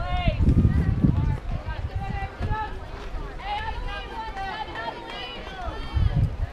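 Several high voices of young players calling and chanting over one another, without clear words, with a low rumble in the first second or so.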